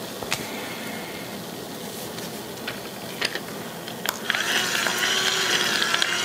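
Handheld electric roller body massager (Meditherapy Sok Sal Spin) being handled with a few light clicks. About four seconds in its motor switches on with a click and runs steadily, the rollers spinning.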